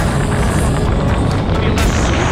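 Loud, steady wind buffeting a camera microphone during a tandem parachute descent under an open canopy, mostly a deep rumble.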